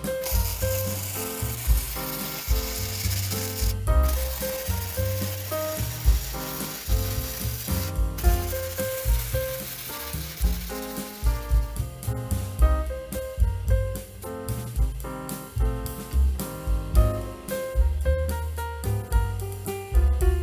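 Flux-core arc welding from a Hobart Handler 125 wire-feed welder, a steady crackling sizzle in a few runs with two short breaks, stopping about eleven seconds in. Background music with a bass line and a stepping melody plays under it and carries on alone afterwards.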